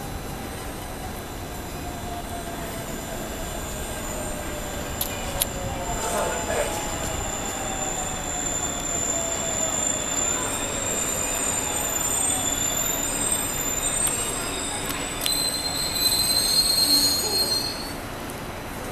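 A Seoul Subway Line 1 electric commuter train pulls into the station and brakes to a stop. Its motor whine falls in pitch as it slows, a thin high whistle runs through the middle, and a louder high-pitched squeal as it brakes builds near the end and stops suddenly as the train halts.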